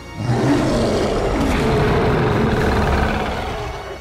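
A large film monster's loud, long roar. It starts just after the beginning and fades away near the end.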